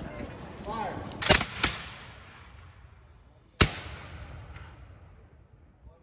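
Ceremonial muskets firing a salute volley: two sharp reports close together about a second in, then a single louder report a couple of seconds later, each followed by an echo dying away.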